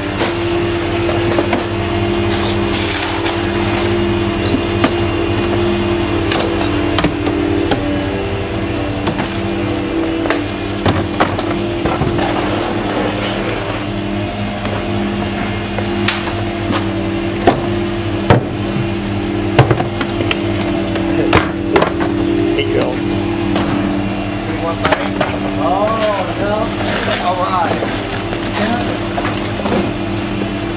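Gasoline-powered GMC C7500 rear-loader garbage truck running with a steady drone, while trash cans are banged against the hopper as they are emptied, giving repeated sharp knocks.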